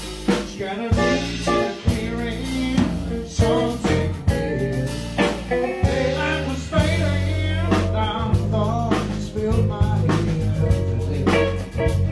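Live blues band playing a song: electric guitar, electric bass and drum kit, with the drums marking a steady beat.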